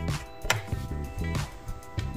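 Background music: held tones with sharp percussive hits.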